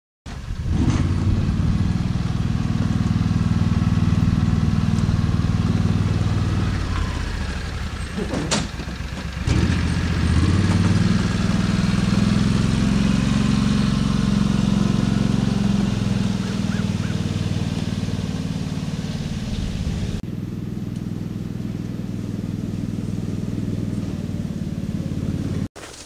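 Small off-road utility vehicle's engine running as it drives up. The engine note falls away briefly about eight seconds in, with a sharp click, then picks up again and runs steadily.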